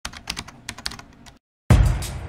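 Computer keyboard typing: a quick, irregular run of key clicks that stops about one and a half seconds in. After a short silent gap, music with a heavy beat starts loudly near the end.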